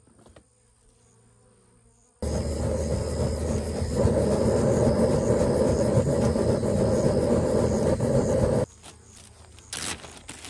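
Handheld butane torch flame blowing into a bee smoker to light its fuel: a steady, low rushing noise that starts abruptly a couple of seconds in and cuts off about six seconds later. Near the end comes a brief crinkle of a plastic bag.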